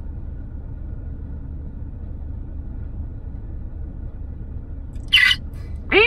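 Low, steady rumble of a car's idling engine heard from inside the cabin. A brief loud hiss-like burst cuts in about five seconds in.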